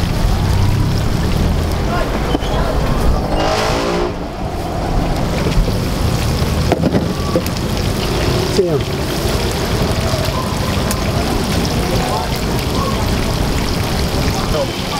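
Chicken pieces deep-frying in a wide wok of hot oil: a steady sizzle and bubbling, over a low rumble with voices in the background.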